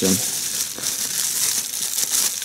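Bubble wrap and thin plastic packaging crinkling and rustling as they are handled and pulled away from a small laptop cooling fan.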